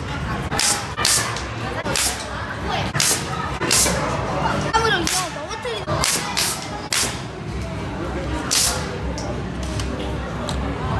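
Toy cork gun firing again and again, a sharp pop roughly every half second to second, about ten shots in all with a longer pause near the end.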